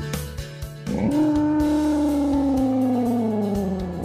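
A single long Tyrannosaurus rex roar, about three seconds, rising sharply at the start and then sliding slowly down in pitch, over background music.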